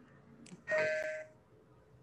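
A short electronic chime: one steady-pitched ding, starting suddenly just under a second in and fading within about half a second, preceded by a faint click.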